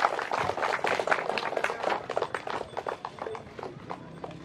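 A small crowd clapping, fading away near the end.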